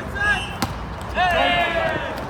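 A single sharp smack of a volleyball hitting the asphalt court, followed about half a second later by a loud, held shout from a player.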